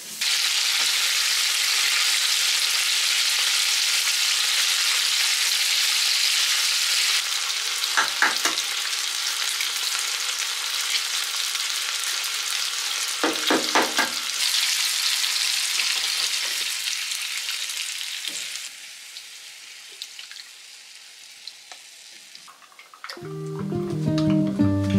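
Food sizzling as it fries in a pan on a gas stove: a steady hiss, broken by two short, sharp knocks about eight and fourteen seconds in. The sizzle becomes quieter in the last few seconds as guitar music comes in.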